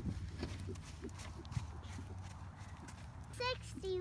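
Hooves of a thoroughbred horse trotting on sand arena footing: a run of soft, uneven thuds. A brief voice comes in near the end.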